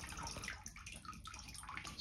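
Water draining from a hot water cylinder's copper pipe stubs into a part-filled bucket: a faint, steady trickle.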